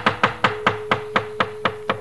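A wayang kulit dalang's wooden knocker (cempala) striking in an even rhythm of about four sharp knocks a second, the dhodhogan that punctuates the dalang's narration. A faint steady musical note is held underneath.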